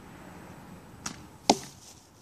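An arrow shot from a Spectre survival bow: a faint snap about a second in, then, half a second later, a single loud, sharp thwack as the arrow strikes the target pile of brush and debris.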